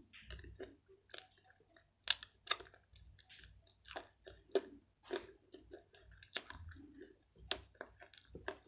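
Close-miked chewing of crunchy white calaba chalk (eko clay) with pink clay paste: irregular crisp crunches and soft, wet mouth sounds, a few crunches louder than the rest.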